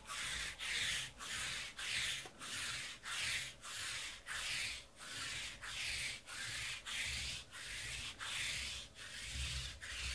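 Sticky lint roller rolled back and forth over a black tabletop mat in quick, even strokes, about two a second.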